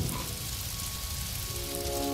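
Fire sound effect in an animated cartoon: a steady hissing rush of flames, with soft background music whose sustained chords come in near the end.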